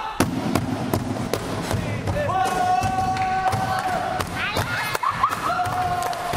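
Cajón box drum played by hand in a steady beat, about two and a half strokes a second. From about two seconds in, a voice sings long held notes over it.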